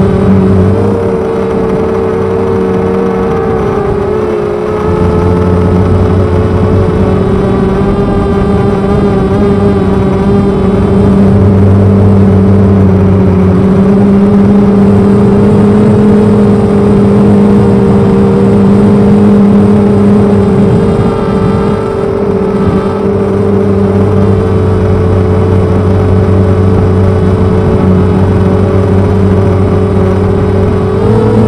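FPV250 quadcopter's brushless motors spinning 6x3 carbon propellers, a loud steady buzz in flight heard close up from the onboard camera, its pitch rising and dipping slightly with throttle. The owner finds these propellers give too little thrust for the 900-gram frame.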